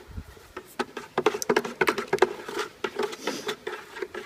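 Thin oil-based paint being stirred in a plastic bucket with a long stick: a dense, irregular run of wet clicks and knocks as the stick churns the paint and strikes the bucket, starting about a second in.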